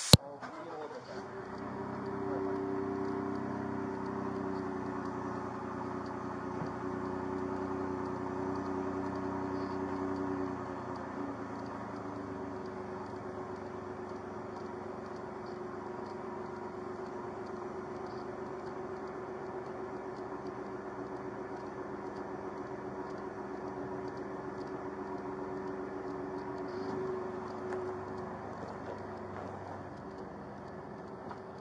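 A vehicle engine running steadily with a hum, louder for the first ten seconds or so, then settling lower until it fades out near the end. A brief, sharp loud burst comes at the very start.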